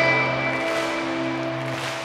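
Live rock band music: a held chord rings on steadily and slowly fades, with a pause in the singing.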